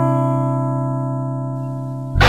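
Song intro: a single guitar chord rings and slowly fades away.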